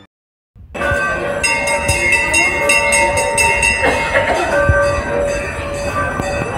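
Temple bells ringing continuously, with sustained overlapping ringing tones and repeated strikes. The sound begins abruptly about half a second in, after a brief silence.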